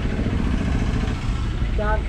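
Low, steady engine rumble, like a motor vehicle running nearby, with a voice starting near the end.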